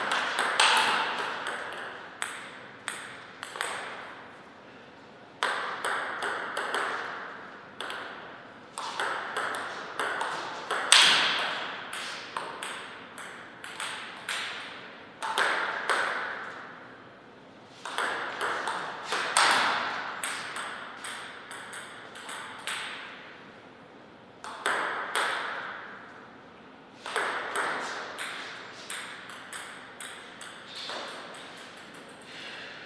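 Table tennis ball clicking off the table and the players' paddles in several quick rallies, each a run of sharp ticks with a short echo, broken by brief pauses between points.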